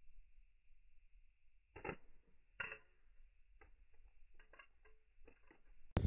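A Motorola Razr V3m flip phone landing on asphalt after being thrown: two faint knocks about two seconds in, then a scatter of lighter clicks as it bounces and skids to a stop.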